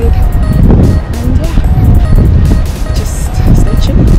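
Loud, uneven low rumble of outdoor street noise on a body-worn action-camera microphone, with faint music and a voice beneath it.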